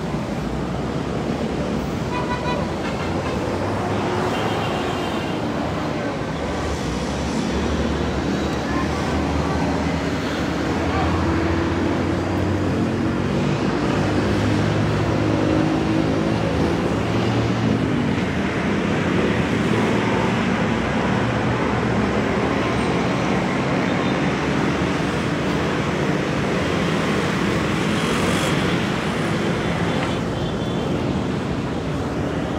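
Steady city street traffic noise, with the drone of vehicle engines growing a little louder through the middle, and people talking in the background.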